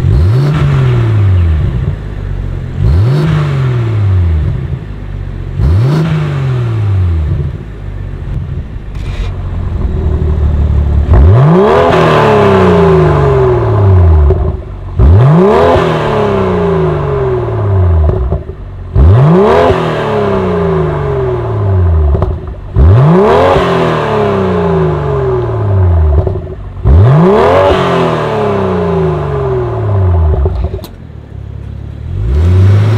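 A BMW M340i's B58 turbocharged straight-six is free-revved repeatedly at standstill through a Fi Exhaust valved cat-back. With the exhaust valves closed come three short blips. After a brief pause, with the valves open, come five louder, sharper revs about four seconds apart, each rising quickly and falling back to idle.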